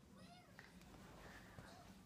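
Near silence: room tone, with a faint, short gliding vocal sound early on and a few fainter ones after it.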